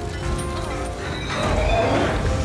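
Film soundtrack: orchestral score over a heavy low rumble. A brief shrill, whinny-like cry rises near the end.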